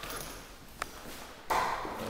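Quiet room tone of an empty room, broken by a single sharp click about 0.8 s in. A louder rush of noise starts near the end, just before speech resumes.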